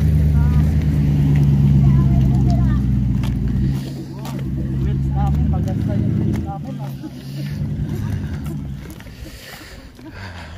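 A vehicle engine running close by, a loud, steady low hum that dips briefly about four seconds in, comes back, and fades away after about six and a half seconds. Faint voices sound over it.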